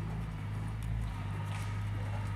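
Cane corsi's paws pattering and scuffing on bare dirt as the dogs run, over a steady low hum.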